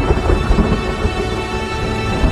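A thunder rumble with rain, laid over sustained music chords.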